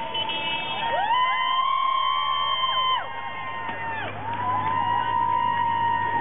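High-pitched singing or chanting voices in long held notes that slide down at their ends, several voices overlapping.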